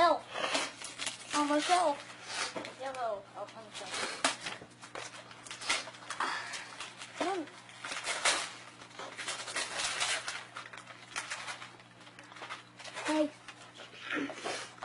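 Paper rustling and tearing in irregular crackles as a wrapped gift is unwrapped by hand, with a few short, high-pitched whimpering vocal sounds now and then.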